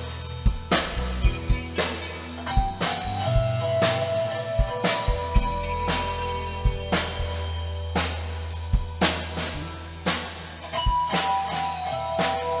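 Live rock band playing: a drum kit beating steadily over a sustained bass line, with long held notes from the melody instruments above.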